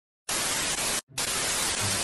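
Television static hiss, starting about a quarter second in and cutting out briefly about a second in before resuming.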